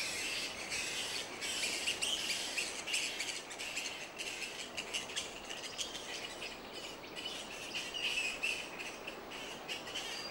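A roosting colony of fruit bats keeps up a steady, dense chatter of high, short chirps and squeaks.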